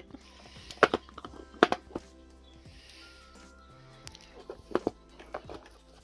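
A small cardboard album box being handled and opened by hand: a handful of sharp taps and clicks, the loudest two in the first two seconds, over soft background music.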